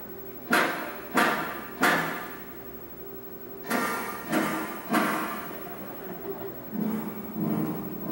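Six knocks on the Tin Man's metal chest in two groups of three, each ringing on briefly with a hollow echo. The hollow ring marks the chest as empty, with no heart inside.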